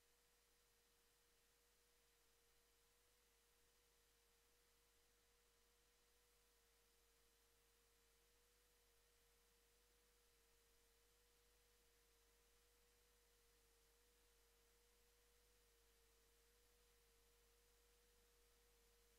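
Near silence, with a very faint steady tone underneath.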